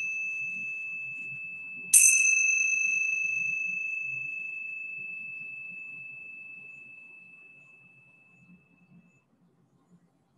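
A high-pitched metal chime struck once about two seconds in, over the fading ring of an earlier strike. Its single clear tone slowly dies away over some seven seconds.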